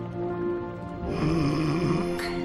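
Soft background music with long held notes. About a second in, a cartoon character starts a low, wavering sleepy mumble over it: a fish talking in her sleep.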